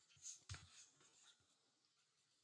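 Near silence: room tone with two faint, short clicks about a quarter and half a second in.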